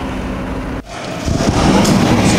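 Outdoor ambience with a steady hum like distant traffic. It cuts off suddenly a little under a second in and gives way to louder, rougher indoor location noise.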